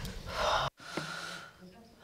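A quick intake of breath close to a microphone, then the audio cuts out abruptly for a moment and comes back as a faint low hum.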